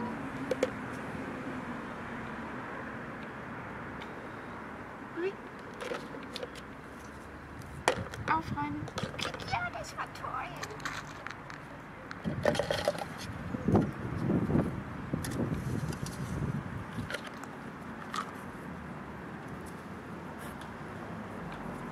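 Plastic sand toys knocking and clattering against a plastic bucket as a small dog drops them in, in scattered bursts over a steady outdoor hiss.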